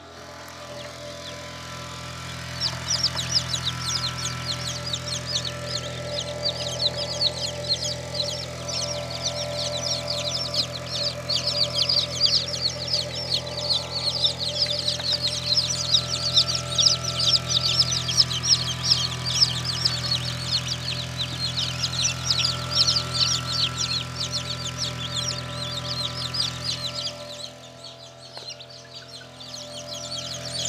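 A crowd of newly hatched chicks in an incubator peeping constantly, many high-pitched cheeps overlapping, starting a couple of seconds in. A steady low hum runs beneath them and stops near the end.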